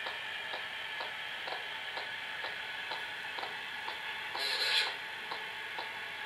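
Static hiss from a spirit-box device playing through speakers, with a regular click about twice a second and a brief louder burst of noise about four and a half seconds in.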